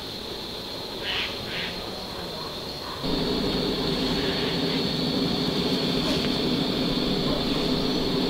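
Portable gas stove burner lit under the cauldron: a couple of faint clicks, then about three seconds in the flame catches and the burner runs with a steady hissing roar.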